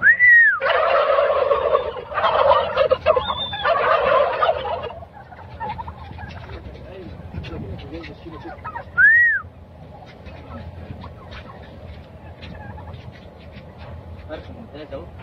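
A flock of white domestic turkeys gobbling, loudest and densest in the first five seconds, then quieter scattered calls and small clicks. A short high rise-and-fall note sounds at the start and again about nine seconds in.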